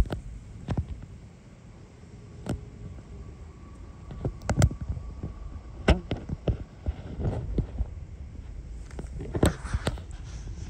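Irregular sharp clicks and knocks, about a dozen, from gear being handled aboard a small fishing boat.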